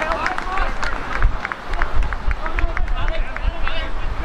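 Men shouting and calling out across an outdoor football pitch during play, with short sharp claps and knocks among the shouts and wind rumbling on the microphone.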